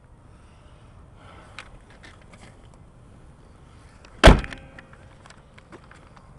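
The hood of a GMC Sierra 2500HD pickup being shut: one loud metal bang about four seconds in, with a short ringing after it.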